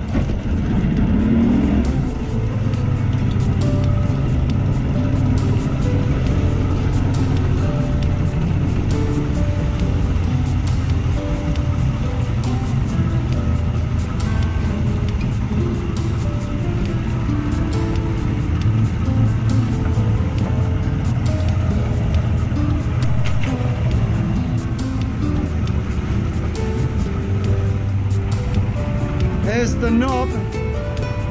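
Boat engine running steadily under way, a low rumble, with jazz guitar background music laid over it.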